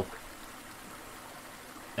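Faint, steady rushing of a mountain stream flowing over rocks.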